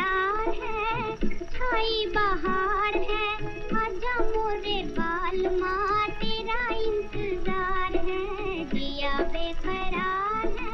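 Hindi film song: a woman singing a wavering, ornamented high melody over instrumental accompaniment.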